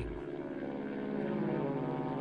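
Propeller aircraft engine droning steadily.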